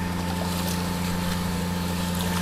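Steady hum of a running motor, a constant low drone with a fixed tone above it, over an even wash of noise.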